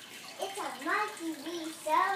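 A young girl's high voice gliding up and down and holding a note, then saying "so" near the end, over a steady background hiss.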